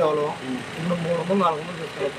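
A man speaking Telugu close to the microphone: only speech.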